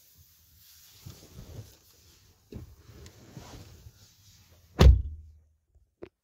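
Faint rustling, then a single heavy thump about five seconds in: the driver's door of a 2022 Chevy Colorado crew cab shutting.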